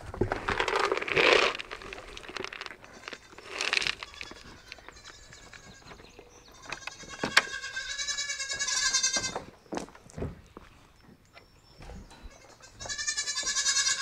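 Goats bleating: a long wavering call about halfway through and another near the end, with rough scuffling noises in the first few seconds.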